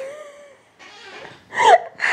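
A woman's voice: the tail of a drawn-out exclamation fades away, followed by a breathy exhale, then a short burst of laughter near the end.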